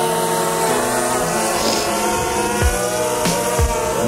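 DJI Mavic Mini quadcopter hovering close by and settling to land, its four propellers giving a steady high, multi-toned whine.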